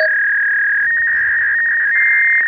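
Loud, steady, high electronic tone added in editing, flipping between two close pitches now and then with tiny breaks.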